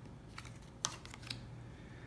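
Three light clicks and taps of cardboard game cards being drawn from a deck and laid on a game board, the sharpest a little under a second in.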